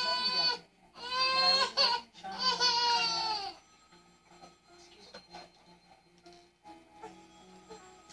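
An eight-month-old baby crying: three long, steady wails in the first three and a half seconds, the last one falling in pitch, then the crying stops.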